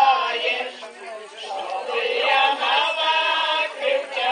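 A women's folk vocal group singing together a cappella, with held notes in phrases and a short breath about a second in.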